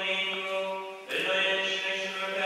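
Liturgical chant sung by voices, holding long steady notes. It breaks off briefly about a second in, then resumes.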